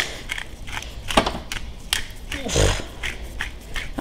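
A few light, sharp clicks and taps from a small metal shaker being shaken, sprinkling seasoning onto tomato slices. There is one short breathy puff of noise about two and a half seconds in.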